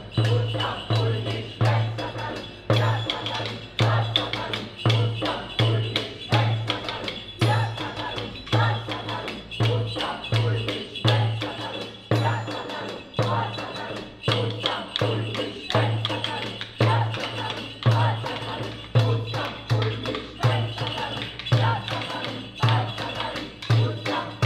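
Frame drum struck with a stick, keeping a steady beat of roughly two strokes a second, with sharper clicks and knocks between the beats.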